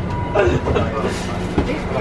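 Steady rumble of a moving passenger train heard from inside the carriage, under men talking and laughing.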